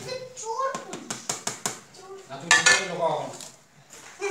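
Metal utensils clinking against metal cooking pots: a quick run of about half a dozen light knocks, then a louder clatter about two and a half seconds in.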